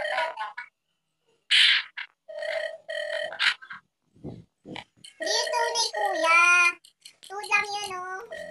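A high-pitched voice making wordless vocal sounds and laughter in short bursts, with pauses between them. Around six seconds in, one longer wavering sound.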